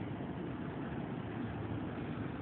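A steady low background hum with noise over it, even throughout, with no distinct knocks or calls.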